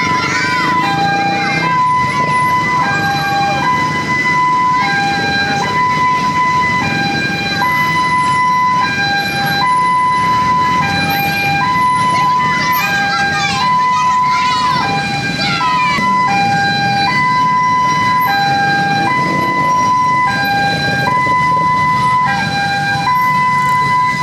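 A two-tone hi-lo siren alternates steadily between a higher and a lower note, about one cycle every two seconds, with the high note held longer. Under it runs a low rumble of motorcycle engines and crowd voices.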